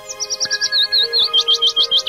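A bird singing a fast series of short chirping notes, loudest in the second half, over soft sustained background music.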